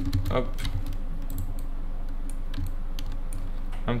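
Computer keyboard keys clicking in a few irregular, scattered keystrokes, as shortcuts are pressed while working in 3D software, over a low steady hum.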